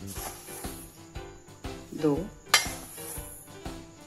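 Metal measuring cup scooping semolina from a steel bowl, with light clinks, then a cupful tipped into a kadhai a little past halfway: a sharp knock and a short rush of falling grains. Steady background music underneath.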